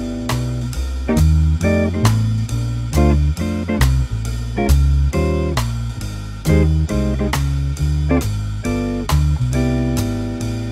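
Archtop jazz guitar comping drop-2 chord voicings (major seventh, minor seventh and dominant 9/13 chords) in short rhythmic stabs. Behind it is a swing backing of walking bass and drums, with a steady cymbal beat about three strokes a second.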